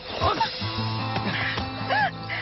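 Background score with sustained, held chords that come in about half a second in. Just before them, at the very start, there is a brief noisy sound.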